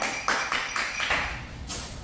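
Loose plastic Lego bricks clicking and rattling under bare feet as someone walks across them on a plastic sheet, a run of sharp clicks.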